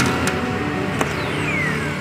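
Arcade claw machine playing its electronic jingle, with a falling electronic tone over the second half as the claw drops onto the plush toys. Two sharp clicks come early.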